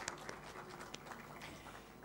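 Faint audience applause, a scatter of hand claps that thins out toward the end.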